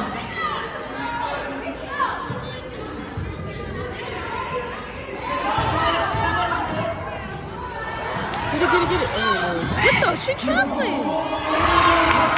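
Basketball bouncing on a hardwood gym floor during play, with sneakers squeaking in a flurry about two-thirds of the way through. Spectators' voices carry and echo in the large hall.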